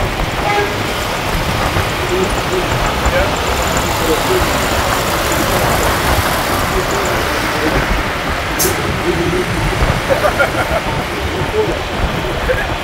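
Steady rush of road and wind noise from a car driving through city traffic, with one sharp click about two-thirds of the way through.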